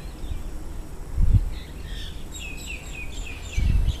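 A bird chirping outdoors: a quick series of short, falling chirps in the second half. Two brief low rumbles on the microphone, one just past a second in and a louder one near the end.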